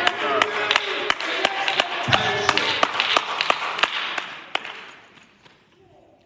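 Scattered hand claps with voices, dying away about five seconds in.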